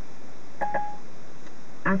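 A single short electronic beep, about a quarter of a second long, a little past halfway through, over a steady line hiss. It is Siri's tone on the iPhone, played over the Ford Sync hands-free audio between the spoken request and Siri's reply.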